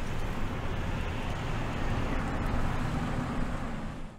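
Car driving along a road: steady engine and tyre noise with a low rumble.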